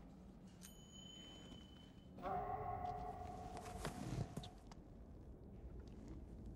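Quiet horror-film sound design: a short, high ringing ping about half a second in, then a swell of several steady tones held together for about two and a half seconds before fading.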